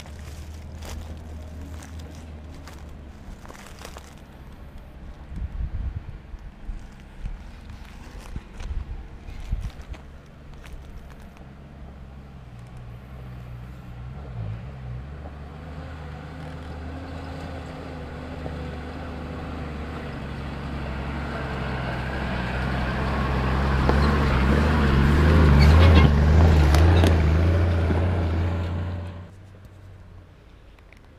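A 4x4's engine labouring as the vehicle climbs a rough dirt track towards the listener, growing steadily louder and loudest near the end. The sound cuts off abruptly just before the end.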